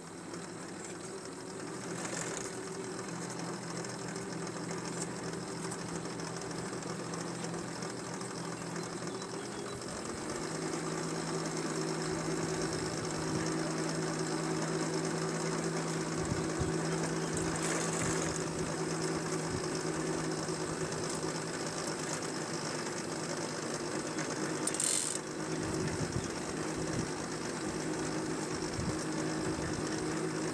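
Drive of a Chtitbine small hoeing machine running as it travels along the bed: a steady mechanical hum with gear whine, stepping up in pitch and loudness about ten seconds in, with a short hiss twice in the second half.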